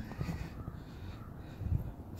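A few short bird calls, faint, over low thumps from walking or handling.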